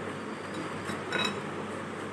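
A light clink of a plastic serving spoon against a glass bowl about a second in, with a short ring, over faint room noise.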